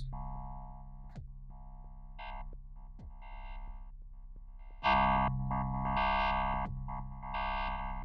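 A sustained synthesizer note from Ableton's Operator FM synth, its tone brightening and dulling in sudden steps as a drawn aftertouch (channel pressure) envelope drives the FM amount. The loudest, brightest stretch comes about five seconds in.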